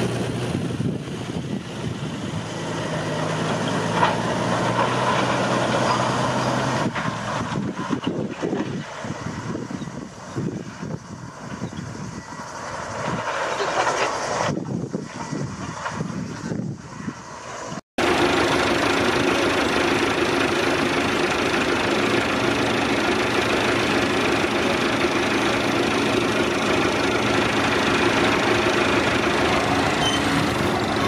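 Diesel machinery engines running: an earthmover's engine runs steadily at first, then after an abrupt cut about halfway through, a louder, even engine drone from a tractor carrying a water tank takes over.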